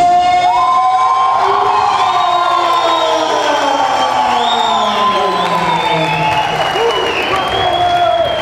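Crowd cheering and whooping as the winner's arm is raised, with many long held shouts overlapping and slowly falling in pitch.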